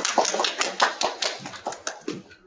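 Hand clapping, a quick irregular run of claps heard over a video-call connection, dying away near the end.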